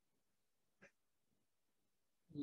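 Near silence, with one faint, short click a little under a second in.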